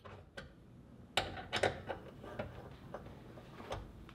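Faint, irregular metallic clicks of a 6 mm Allen wrench turning and seating in the bolts of a hood strut's upper mount as they are tightened.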